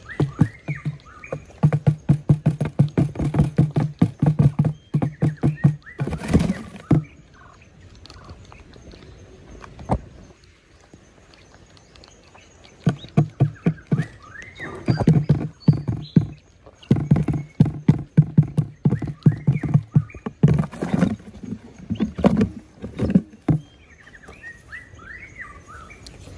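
Quails pecking grain off a hollow trap lid: bursts of rapid, resonant tapping, with a quieter pause of several seconds in the middle. Short chirps come now and then.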